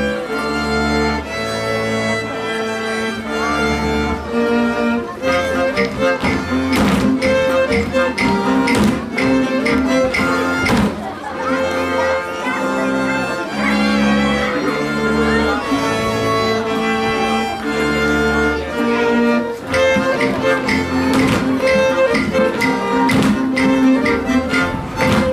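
Folk dance music played on fiddle and string bass, with a steady pulsing bass beat.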